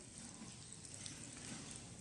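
Faint, steady hiss of background noise with no distinct sounds standing out.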